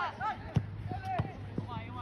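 Shouted calls from players on a soccer pitch, with a sharp thud of the ball being kicked about half a second in.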